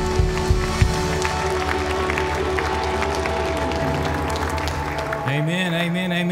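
A live worship band holds a final sustained chord, with a few drum hits early on and scattered congregation clapping. The chord fades, and a man's voice starts speaking near the end.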